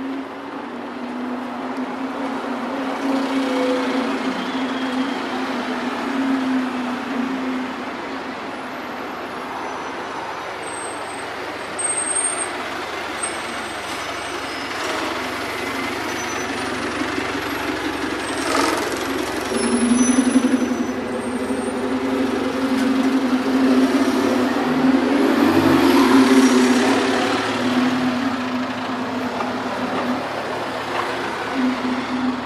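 City street traffic, led by a heavy vehicle's engine running with a steady low hum that drops back for a while mid-way and returns strongly near the end.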